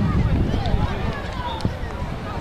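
Scattered shouts and calls from players and spectators across an open rugby pitch during youth play, over a constant low rumble.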